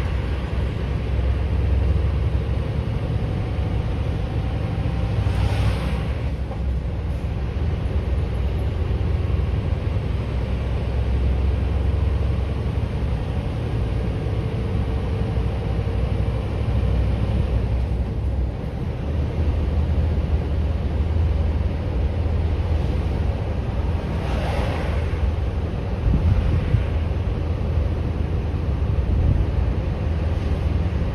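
Scania V8 truck under way: a steady low engine and road rumble, with a few brief whooshes, one near the start, one about five seconds in and one about twenty-four seconds in.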